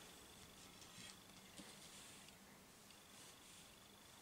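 Near silence: room tone, with a faint tick about one and a half seconds in.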